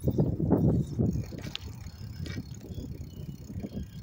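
A bicycle being ridden, heard on a handheld phone: a low rumble of wind and road noise on the microphone, loudest in the first second, with a few light clicks from the bike.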